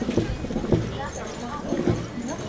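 Voices of a gathered crowd talking in the background, with a few dull low thumps about a second apart.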